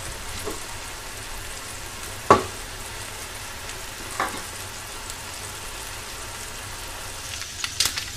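Strips of pork neck sizzling steadily in hot oil in a frying pan as they are stirred with a silicone spatula. A sharp knock sounds a little over two seconds in, with a lighter one about four seconds in.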